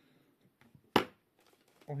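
A single sharp click about a second in, as a small hard part or tool is handled on the work table during model-kit assembly; otherwise quiet room tone.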